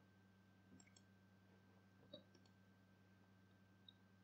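Near silence with a few faint computer-mouse clicks scattered through it, over a low steady electrical hum.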